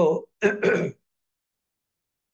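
A man's voice: the tail of a spoken word, then a short throat-clear, and then nothing from about a second in.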